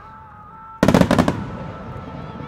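Fireworks display: a rapid cluster of loud shell bursts about a second in, fading after, over music with long held notes.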